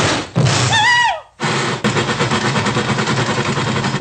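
Cartoon steam-train sound effects from a film soundtrack: a short whistle toot that falls in pitch about a second in, then rapid, even chugging of the locomotive.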